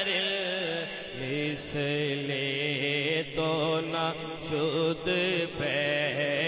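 A naat, an Islamic devotional poem, sung by a solo voice in long, ornamented, drawn-out phrases. From about a second in, a steady low drone is held beneath the voice.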